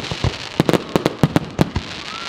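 Aerial fireworks display: a rapid, irregular string of sharp bangs from shells bursting, about a dozen in two seconds, over a crackling hiss in the first moments.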